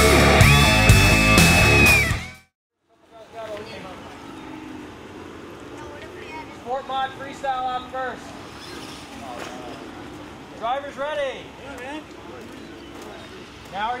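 Rock music with electric guitar that cuts off abruptly about two seconds in. Then a quieter open-air background with a few short bursts of people's voices.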